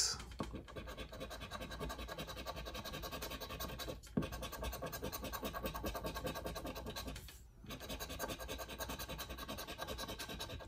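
A large coin-style token scratching the coating off a paper scratch-off lottery ticket in quick back-and-forth strokes, several a second, pausing briefly twice.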